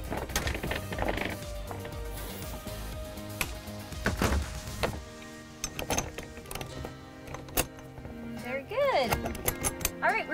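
Lid of a plastic storage box being shut and locked: a scatter of knocks and clicks, with a heavier knock about four seconds in, over steady background music.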